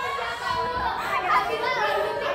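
Several teenage girls laughing and chattering excitedly at once, their voices overlapping.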